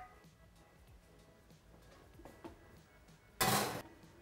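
A glass baking dish being loaded into an oven: a few faint clinks, then near the end a loud scrape lasting about half a second as it goes in.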